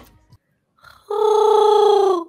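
A woman's voice imitating Chewbacca's roar: one loud, held, high-pitched wail starting about a second in, dropping in pitch at the end.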